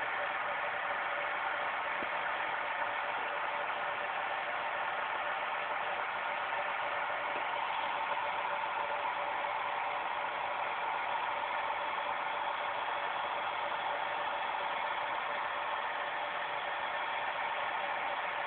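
Steady, even background hum and hiss with faint held tones, level and unchanging.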